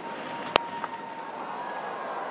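A cricket bat strikes the ball once, a single sharp crack about half a second in, over steady background stadium crowd noise.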